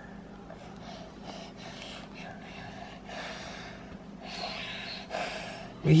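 A toddler blowing into the inflation valve of a plastic inflatable swimming pool: a few soft, breathy puffs of air at uneven intervals.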